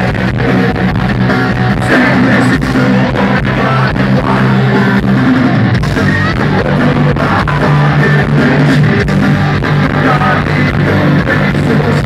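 Brazilian punk rock band playing live and loud: electric guitars and drums with a singer, heard from within the crowd.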